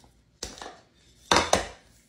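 Lid of a glass storage jar being taken off and handled: a knock about half a second in, then two sharp clinks close together near the end.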